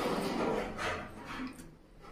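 Close-up eating sounds: chewing a mouthful of mutton curry and rice, with wet squishes of bare fingers gathering the curried food from the plate. The sounds are louder at first and fade near the end.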